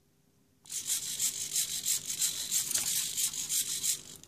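Small hobby servos in a 3D-printed MobBob biped robot whirring and buzzing in a rapid, fluttering run as the robot carries out a repeated movement commanded over Bluetooth, starting just under a second in.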